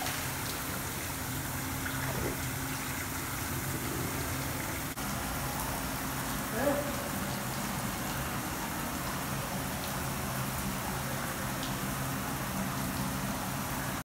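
Steady hiss of water with a low hum from the pool's machinery, an indoor pool's background sound, with faint voices now and then.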